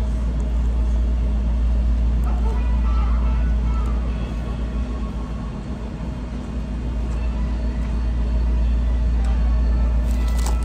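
Restaurant dining-room background: a steady low rumble with a hum, and faint voices and small clatter over it.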